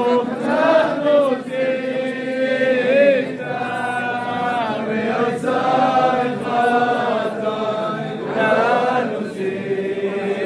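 A crowd of people singing together in unison: a slow, chant-like melody of long held notes that glide from one pitch to the next.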